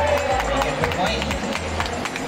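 Badminton rally: several sharp racket hits on the shuttlecock and players' footsteps on the court, over background music with a pulsing bass beat and voices from the crowd.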